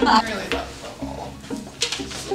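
A woman laughing hard, loud at first, then trailing off into quieter, breathy laughs; a brief sharp noise near the end.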